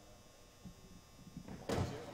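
Running footsteps of a pole vaulter's short run-up, carrying the pole, on a gym floor. They start about a second and a half in and build to a loud thump near the end.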